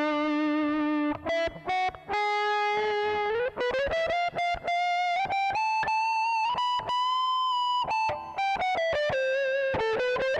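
Electric guitar played through the Zoom G1 multi-effects pedal's 'Lead' preset, a sustained, distorted lead tone. A single-note line: a long held note at the start, quick picked notes, a string bend rising about three and a half seconds in, and a long high held note in the middle.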